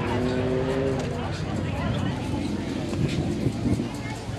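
A car engine running steadily, with people talking around it.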